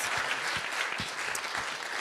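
Audience and people on stage applauding, a steady patter of many hands clapping.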